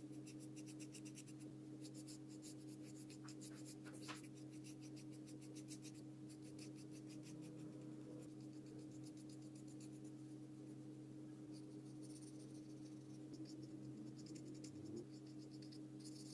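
Faint, quick scratchy strokes of a paintbrush laying acrylic paint onto paper, coming in runs with short pauses, over a steady low hum.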